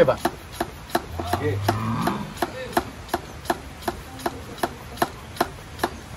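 Homemade fogging machine being readied: a steady run of sharp clicks, about three a second.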